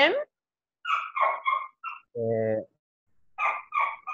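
Small dog yapping in two quick runs of three or four short barks, heard over a video call; between the runs a person gives a short hummed 'mm'.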